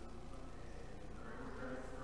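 A steady buzzing drone made of several held pitches, getting a little brighter near the end.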